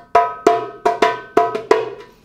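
Goblet drum (doumbek) played with bare hands: a quick run of about eight sharp, high strokes, each leaving a short ringing tone.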